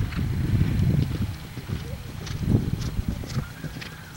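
Horse's hoofbeats galloping on the cross-country course, loudest in the first second or so, then a few separate hoof thuds.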